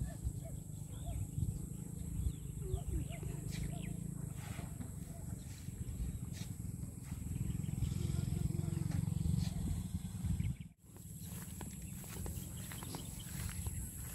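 Wind buffeting the microphone outdoors, a low rumble that cuts out briefly about ten and a half seconds in.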